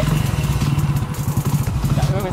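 Hero Passion motorcycle's single-cylinder engine idling steadily close by, with a rapid, even beat.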